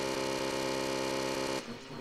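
Black MIDI playback on a piano sound: a huge cluster chord of many notes held at once, sounding steadily, cutting off about one and a half seconds in and giving way to a dense flurry of rapid notes.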